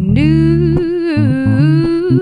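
A woman's voice singing long sustained notes over an electric bass guitar that is the only accompaniment, in a live soul cover. The voice holds one note, steps down about a second in, then rises back near the end.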